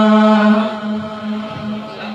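A man's voice holds one long sung note at the close of a Malayalam Islamic devotional song. The note stays steady, then fades after about half a second.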